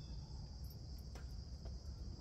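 Steady, high-pitched chorus of crickets, with a few faint ticks over it.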